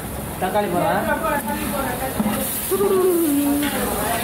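People talking in the room, over a faint steady sizzle of onions and masala frying in a large pot as they are stirred.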